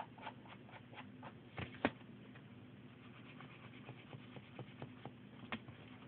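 Light, irregular taps and clicks from handling a rubber stamp and ink pad on a craft desk, with one sharper knock a little under two seconds in. A faint steady low hum runs underneath.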